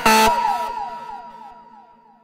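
The ending of an electronic dance track: a last loud synth hit, then a tail of quick repeats that each slide down in pitch and fade out toward silence.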